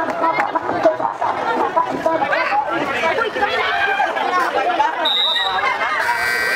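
Crowd chatter: many people talking and calling out at once, with no single voice standing out. A short high-pitched steady tone sounds briefly about five seconds in.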